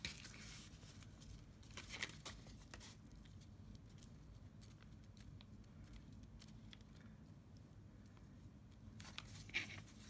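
Near silence over a low steady hum, broken by faint scattered taps and paper rustles as wet glue is brushed onto a paper envelope.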